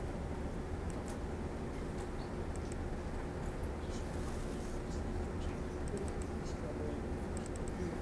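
Sparse, faint clicks of a laptop being worked over a steady low room hum, with a quick run of several clicks near the end.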